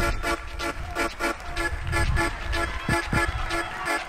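Background music: a quick run of repeated pitched notes, several a second, over an occasional low beat.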